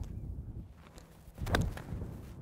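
Seven iron striking a golf ball off the tee: one sharp crack about one and a half seconds in. Wind rumbles on the microphone throughout.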